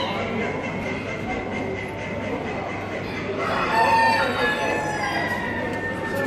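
A rooster crowing once, a long call starting about three and a half seconds in, over the steady background noise of a large hall.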